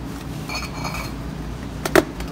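Glass bottles in a cardboard multipack clinking as the pack is pulled off a store shelf: faint ringing clinks about half a second in, then one sharp clink near the end, over a steady low store hum.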